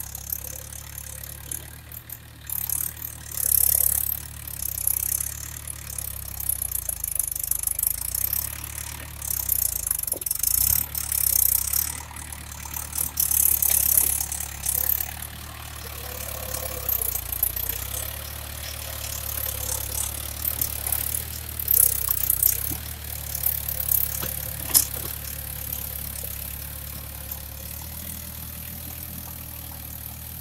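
Farm tractor's diesel engine running steadily while it pulls a puddling implement through a flooded paddy field. Irregular bursts of hiss come and go over the engine drone, mostly in the first half.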